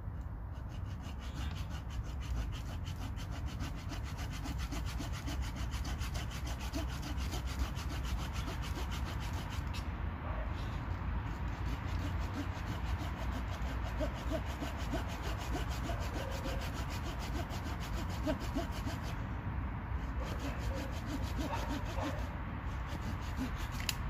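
Hand saw cutting a V-notch into a wooden pole in quick, steady back-and-forth strokes, with brief pauses around ten and twenty seconds in.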